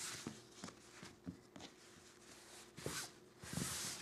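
Faint rustling of cloth as a hand smooths and stretches an old ironing-board cover flat over fabric on a tabletop, in a few soft swishes with light taps.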